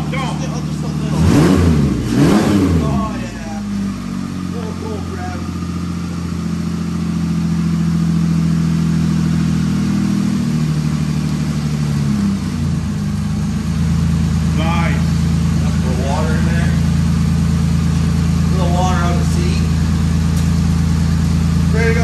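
Ford Ranger race truck's engine running in the shop, blipped twice about a second in, each rev rising and falling quickly. It then settles to a steady idle, with a small drop in idle speed about twelve seconds in.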